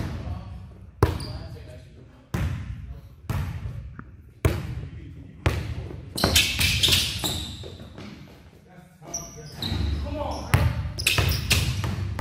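Basketballs bouncing on a hard gym court: single sharp thumps about a second apart, each echoing in the large hall.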